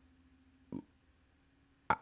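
A pause with almost no sound, broken by two brief vocal noises from the person: a faint one under a second in and a louder, short one near the end.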